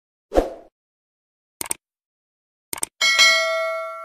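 Subscribe-button animation sound effects: a short soft thump, then two quick clicks about a second apart, then a bright bell ding whose several steady tones ring on and slowly fade.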